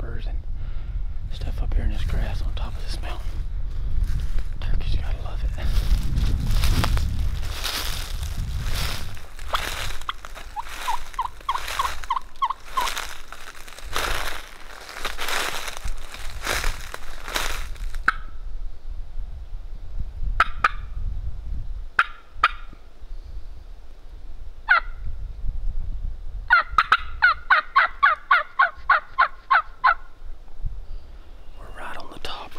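Footsteps crunching through dry leaf litter for the first two-thirds. Then a few single turkey notes, and near the end a loud, even run of about fifteen turkey yelps.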